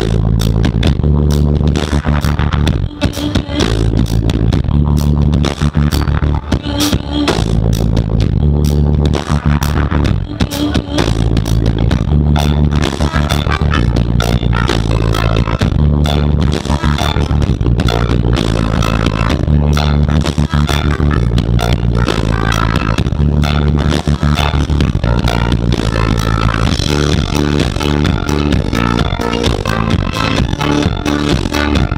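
Live swing band playing loud, uptempo music: a drum kit keeps a steady beat under a moving bass line, with amplified mandolin on top. A trumpet joins near the end.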